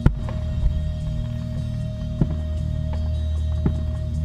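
Distant fireworks going off: several sharp pops at irregular intervals, the loudest right at the start. They sound over a steady low hum.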